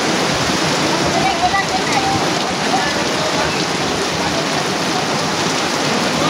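Steady hiss of rain falling, with faint voices in the background.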